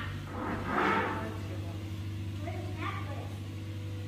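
A boat's motor running with a steady low hum, under short bursts of people's voices.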